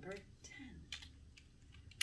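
A few light plastic clicks as a marker and its cap are handled and the cap is pushed back on.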